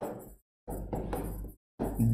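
Marker pen writing on a whiteboard: short stretches of scratchy strokes broken by two brief silent gaps.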